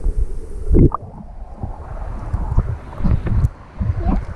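Muffled sound of river water heard through a camera held underwater: a low rumble broken by irregular low thuds, the loudest just before a second in.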